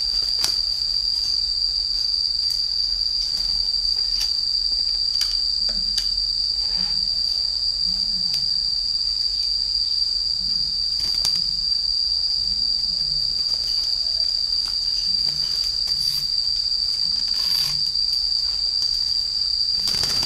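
Insect chirring, one steady, high, unbroken tone, the loudest sound throughout. Scattered light clicks and taps come from hands working at the door of a wooden bird cage.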